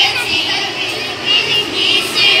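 Many children's high voices shouting and chanting together in a large hall, overlapping without a break.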